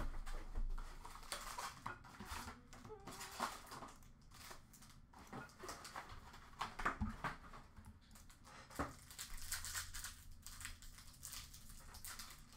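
Foil hockey card pack wrappers crinkling and tearing as packs are opened, with scattered rustles and soft clicks of cards being handled.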